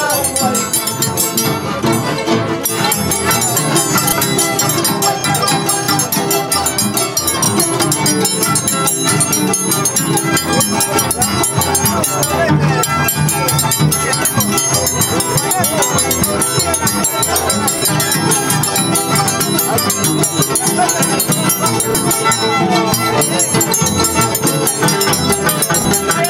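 Andean harps and violins playing a huayno together, loud and continuous.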